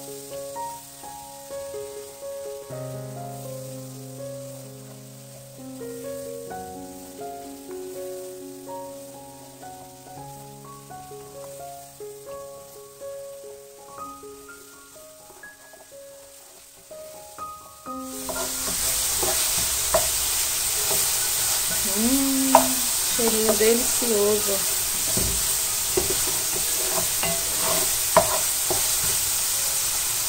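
Background music with a simple melody, then, a little past halfway, loud sizzling of chopped onion frying in rendered pork fat in an aluminium pot. A wooden spoon stirs and scrapes across the pot's bottom, lifting the browned residue.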